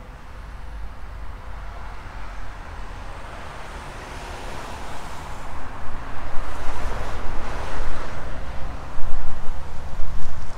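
Rushing noise of road traffic passing that swells from about four seconds in and stays loud to the end, over a steady low rumble of wind on the microphone.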